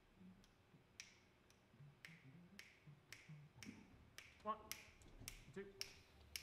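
Fingers snapping a steady tempo, a little under two snaps a second, beginning about a second in: a jazz band's tempo being set before a tune starts. Near the end a voice begins counting it off.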